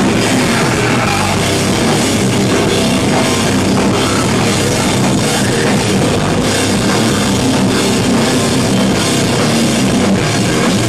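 Hardcore metal band playing live: loud distorted electric guitars over a pounding drum kit, dense and unbroken.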